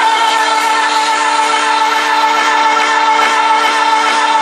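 Electronic dance music over a festival sound system, heard from the crowd: a long held synthesizer chord whose pitch does not move, with hardly any beat.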